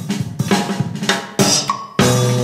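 Upbeat jazz-style music with drum kit and brass, with a busy beat of snare, cymbal and hi-hat hits.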